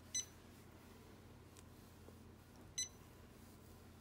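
Janome Memory Craft 550E embroidery machine's touchscreen beeping twice, a short high beep each time an on-screen button is pressed, about two and a half seconds apart.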